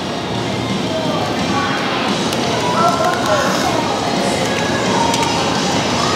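Close-miked chewing of a grilled shrimp, a dense crackly mouth sound, with soft music underneath.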